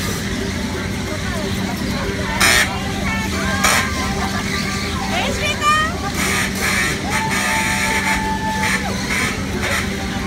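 Fairground din on a running kiddie car carousel: untranscribed voices over a steady low hum, with two sharp knocks about two and a half and three and a half seconds in.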